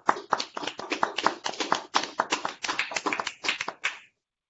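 Several people clapping out of step over a video call, a quick uneven patter of hand claps that stops at the very end.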